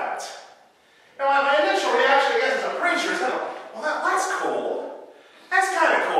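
Speech only: a man preaching, with a brief pause about a second in.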